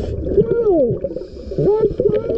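A scuba diver's voice, muffled underwater through a regulator, hooting in two sliding calls: one falling about half a second in, one rising near the end.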